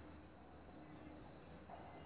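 Faint insect chirping in the background: a high, evenly pulsing trill over a low hiss.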